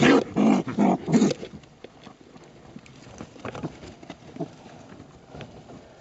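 Baby raccoons crying, a quick run of loud, pitched calls in the first second and a half. Then scattered quiet rustles and scrapes as a gloved hand works among them in loose insulation.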